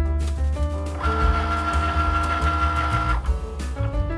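Background music, with a Cricut Maker cutting machine's motor drawing the loaded cutting mat in. The motor runs as a steady whine from about a second in until about three seconds.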